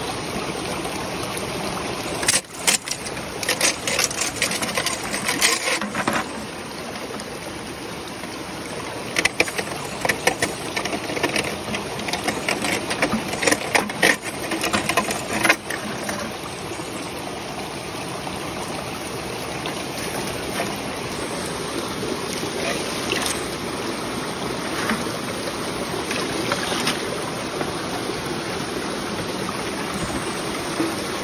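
Steady rush of a river, with two spells of splashing and scrubbing about two to six seconds in and from nine to sixteen seconds, as a small sluice box's metal riffles and mat are scrubbed and rinsed out by hand in a bucket of water during cleanup.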